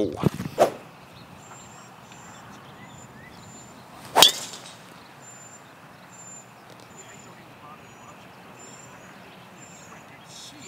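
A three wood striking a golf ball off the tee: one sharp crack about four seconds in.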